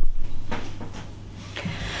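Handling noise from cross-stitched ornaments being moved about on a table: a short knock right at the start, then a soft rustle that fades away.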